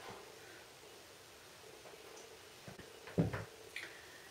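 Mostly quiet room with faint handling noise, and one soft low knock a little after three seconds in as the curling wand is set down, with a couple of small clicks around it.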